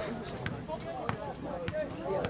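A soccer ball bouncing on the ground close by, about three sharp thuds half a second apart, over the voices of spectators talking.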